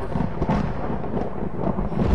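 A continuous deep rumble with a hiss above it.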